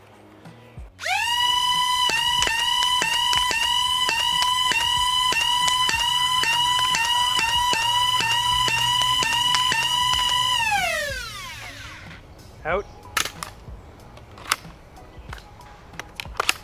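Flywheel motors of a solenoid-fed Nerf double bolter spinning up to a steady high whine. The solenoid pusher fires both barrels at once on each stroke, so the whine dips briefly about two and a half times a second as darts go through. About ten seconds in, firing stops and the flywheels spin down with a falling pitch, followed by a few sharp clicks.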